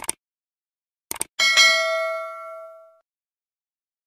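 Subscribe-button animation sound effect: a click, two more quick clicks about a second later, then a notification bell ding that rings on and fades away over about a second and a half.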